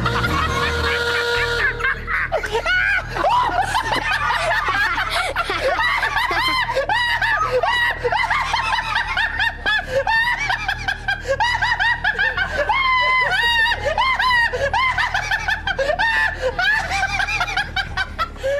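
A man laughing uncontrollably and at length: a high-pitched, wavering laugh in rapid repeated bursts that barely pauses.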